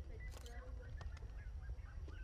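Faint birds calling, many short chirps and whistles, over a low steady rumble, with a brief burst of noise about half a second in.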